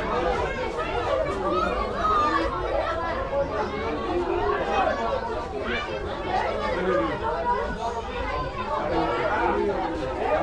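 Several people's voices chattering over one another, with no single clear speaker, over a steady low rumble.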